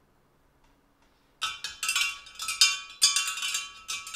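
A metal spoon stirring liquid in a large glass jar, clinking rapidly against the glass with a bright ringing tone. It starts about a second and a half in and keeps going.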